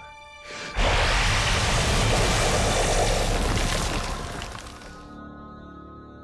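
Loud sonic-blast sound effect for a villain's sonic scream: a sudden, dense rushing noise with a deep rumble under it. It starts under a second in, holds for about three seconds and fades out by about five seconds. Sustained dramatic score tones are left under it.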